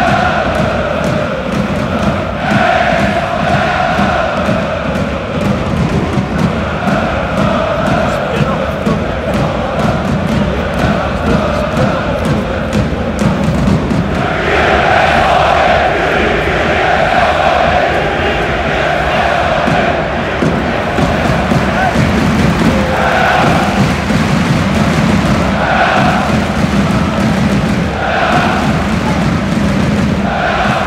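A large crowd of football fans singing a chant together in a stadium stand. The singing swells louder about halfway through, then falls into short phrases repeated every couple of seconds.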